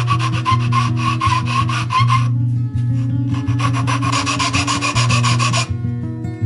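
Hand sanding the edge of a maple block with folded sandpaper: two runs of quick back-and-forth scratchy strokes with a short pause between, over guitar music.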